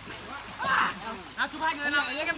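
Voices of people in and around a swimming pool, with light water sloshing; a short splashy burst comes just under a second in.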